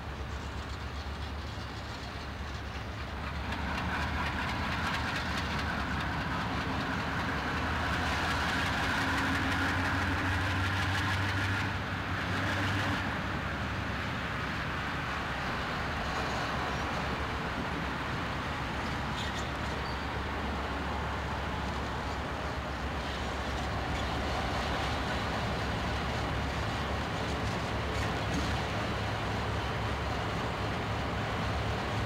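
Diesel freight locomotives idling close by: a steady low engine hum that grows louder a few seconds in and drops back about twelve seconds in.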